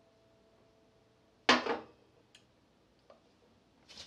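A man's single loud, short throat noise, like a sputter or gag, as he reacts to a sip of a coffee pale ale he finds foul, followed by a couple of faint clicks.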